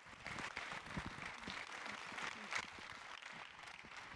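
Light audience applause with separate claps easy to pick out, cutting in suddenly out of silence.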